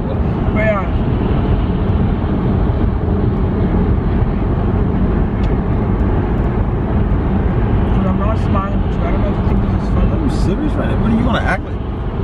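Steady road and engine noise inside a moving car's cabin, a low rumble with a constant hum, with a few brief snatches of voice.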